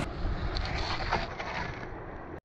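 Metal spade falling over into beach shingle, with a few faint knocks and scrapes over a steady rumble of wind on the microphone.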